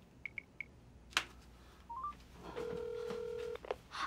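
Mobile phone dialing a call: three short high keypad beeps, a click, a brief rising three-note tone, then about a second of steady ringback tone as the call goes through.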